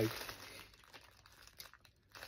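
Brief, faint crinkling of a plastic mailer bag being handled, in the first half-second.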